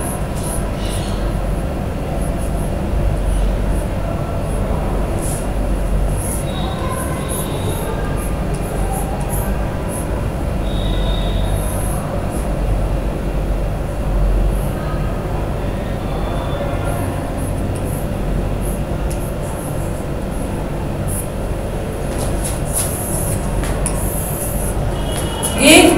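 A steady low rumble of background noise, with faint intermittent scratches and taps of chalk writing on a blackboard.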